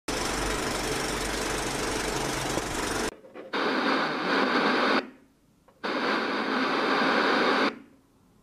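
Intro sound effects: a steady noisy hiss over a low hum for about three seconds, then two bursts of TV static, each one and a half to two seconds long, starting and stopping abruptly.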